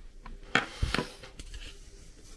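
A few light clicks and a soft knock as a cable is handled and its plug set down on a desk.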